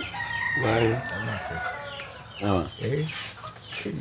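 A rooster crowing: one long, level call lasting about a second and a half at the start, with short stretches of men's low talk through the rest, the loudest about two and a half seconds in.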